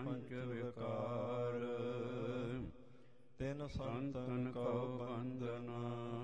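A man's voice chanting Sikh scripture (Gurbani) in slow, long-held melodic phrases, with a brief pause about three seconds in.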